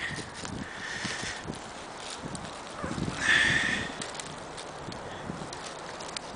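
Footsteps and rustling in low, dry shoreline brush: a string of small crunches and crackles, with a louder rustle about three seconds in, over wind noise.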